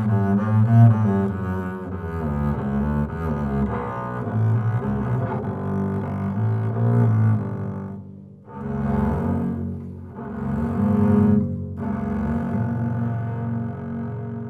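Solo double bass played with the bow: a flowing line of quick notes, then three shorter phrases with brief breaks between them, the last note fading away at the end.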